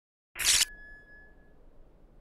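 A short, sharp sound-effect hit for an on-screen title graphic, lasting about a third of a second and starting about a third of a second in, leaving a thin ringing tone that fades over about a second. A faint low hiss follows.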